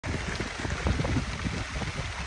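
Heavy rain falling on a canvas tent roof: a dense, steady hiss with many small low thuds.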